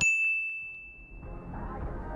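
A single high ding with a sharp start, ringing out and fading over about a second and a half. A faint low rumble fades in after the first second.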